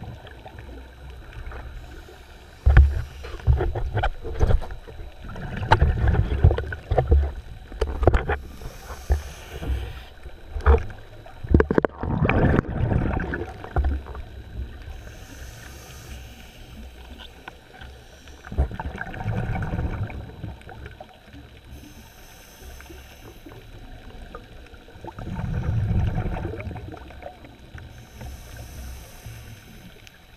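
Underwater recording with a muffled sound: rushes of a diver's exhaled bubbles in bursts several seconds apart, with scattered knocks and clicks.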